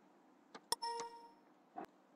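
A click, then a short computer system alert chime that rings and fades over about half a second, with another click near the end. The chime is the Windows alert that comes with the warning dialog for changing a file's extension, here from .txt to .php.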